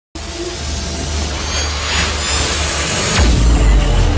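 Logo-intro sound effect: a swelling noisy whoosh that sweeps down into a deep low boom a little over three seconds in.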